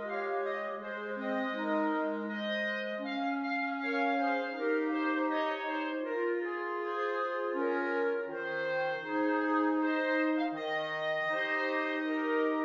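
A clarinet quartet playing a slow passage of long held notes in four-part harmony. The lowest part drops out about three seconds in and comes back lower about eight seconds in.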